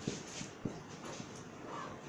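Marker writing on a whiteboard: a few light taps and strokes, then a short high squeak near the end.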